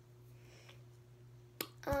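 Quiet room tone with a faint steady hum, broken about a second and a half in by a single sharp click, followed near the end by a girl's voice starting to speak.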